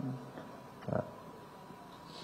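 A pause in a man's speech at a microphone: low room tone, broken about a second in by one short breath-like sound from the speaker.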